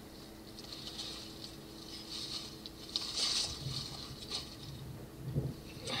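Soft, irregular rustling and scuffing in dry grass and dead leaves, over a faint steady hum.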